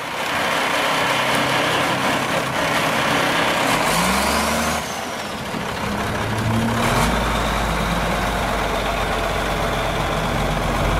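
Diesel engine of a 1991 Peterbilt 320 cab-over truck running as the truck drives off slowly. The engine pitch rises about four seconds in and again about seven seconds in, and the low rumble grows heavier after the second rise.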